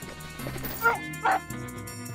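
A cartoon dog barking twice, two short calls about half a second apart near the middle, over light background music.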